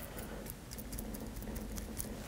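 Faint, irregular light ticking and tapping as a small brush dabs brake caliper grease onto the metal pad slides of a brake caliper bracket, over a low steady hum.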